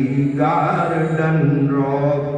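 A man reciting Hindi verse in a sung, chanting style, drawing out long held notes, amplified through a microphone and loudspeakers.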